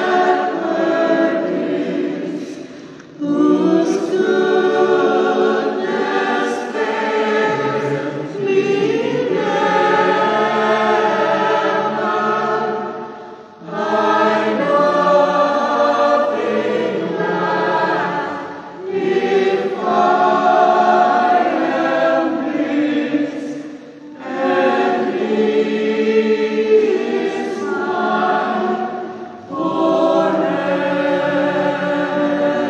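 A church choir singing the offertory hymn during the preparation of the gifts, in phrases about five seconds long with short breaks between the lines.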